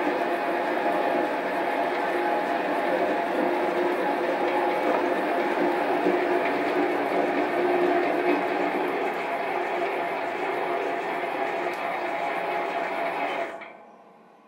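Metal lathe running on carriage power feed as a between-centres boring bar cuts through the bore of a block clamped to the carriage. The machine sound is steady with a few steady tones, and it stops abruptly near the end.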